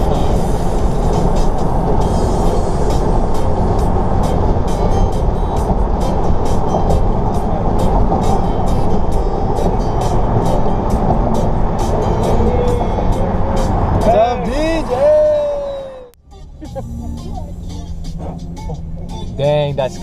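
Wind and road noise through an open car window at driving speed, under background music with a steady beat. A voice comes in near the end, and the heavy wind noise cuts off suddenly about four seconds before the end.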